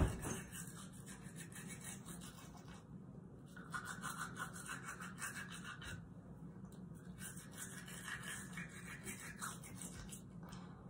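Manual toothbrush scrubbing teeth in quick back-and-forth strokes, with short pauses about three and six seconds in.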